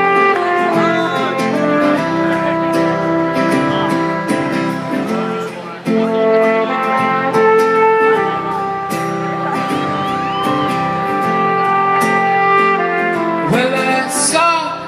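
A live band plays the slow opening of a rock song from the stage, with held chords that change every second or two. The recording is made from the audience, and faint voices from the crowd come through.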